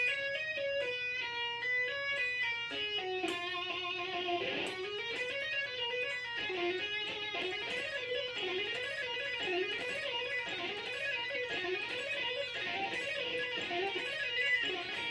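Electric guitar playing a legato run on the B and high E strings. It is almost all hammer-ons and pull-offs with only one or two picked notes, sliding from one three-note position to the next. Slower stepwise notes for about the first four seconds, then a faster flowing run that rises and falls.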